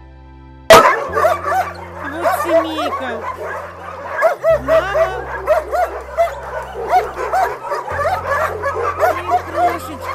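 Several puppies yipping and whining in rapid, overlapping high calls, starting suddenly about a second in.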